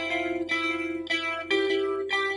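Background music led by a picked guitar, with a new note or chord about every half second.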